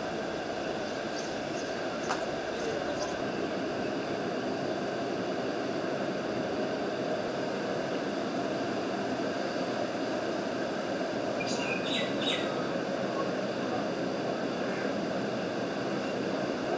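Flood-swollen, silt-laden river rushing with a steady roar. A couple of short high chirps come about twelve seconds in.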